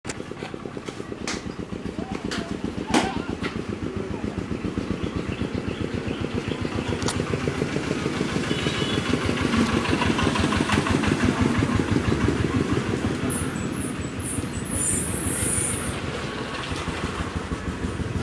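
An engine running steadily, its fast, even firing pulses underlying everything, with a few sharp clicks in the first few seconds.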